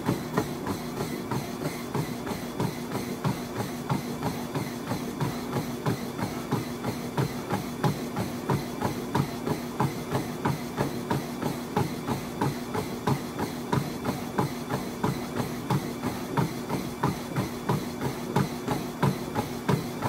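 Running feet pounding a treadmill belt at sprint pace in a fast, even rhythm, over the steady hum of the treadmill's motor and belt.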